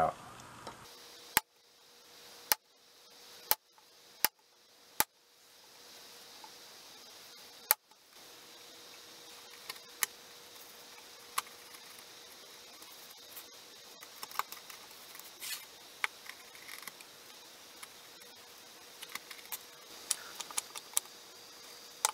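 Bench chisel chopping out a mortise in a pine board. There are several sharp knocks in the first few seconds, then a run of lighter clicks and scraping taps as the chisel pares the waste.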